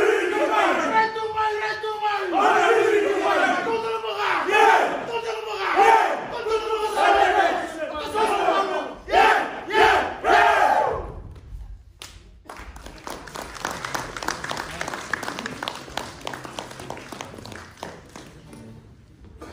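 A group of men chanting and shouting in unison in a war-dance performance: loud calls about once a second, each falling in pitch. About eleven seconds in the chanting stops suddenly and gives way to quieter, steady applause.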